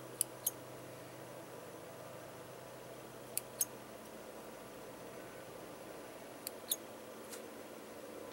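Small scissors snipping the excess edges off a dried air-dry paper-clay moulding: a few sharp clicks in quick pairs a few seconds apart, and one more near the end.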